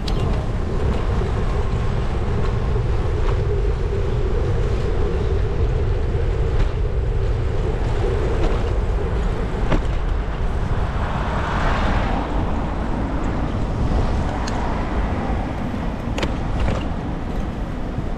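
Wind buffeting the microphone of a bicycle-mounted camera while riding, over a steady rumble of tyres on the road and city traffic. A few sharp ticks come through, and a passing vehicle swells up about two-thirds of the way in.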